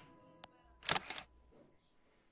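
A faint click about half a second in, then a louder, sharp double click about a second in, with near silence between them.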